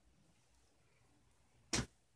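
Faint room tone, then near the end one short, loud rushing burst as a fabric wrestling mask is pulled off the head close to the microphone.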